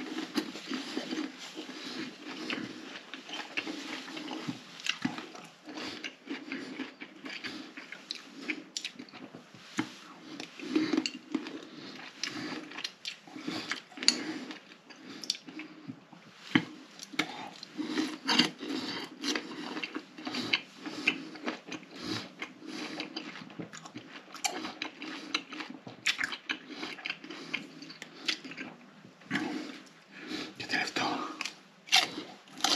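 Close-miked mouth sounds of a man biting and chewing fresh fruit slices: dense, irregular clicks and smacks all through.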